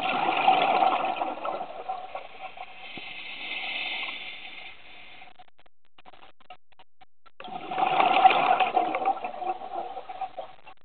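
Open-circuit scuba regulator breathing underwater. An exhalation sends out a rattling burst of bubbles in the first second or so, an inhalation hisses through the regulator a few seconds in, and after a short pause a second bubbly exhalation comes near the end.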